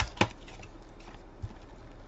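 A hand handling a cardboard trading-card box: two sharp clicks right at the start, then a softer knock about a second and a half in.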